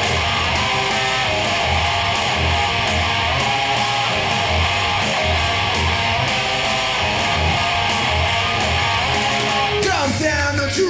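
Guitar strummed in a steady, driving rock rhythm with a low bass pulse underneath, about two beats a second; an instrumental stretch with no singing.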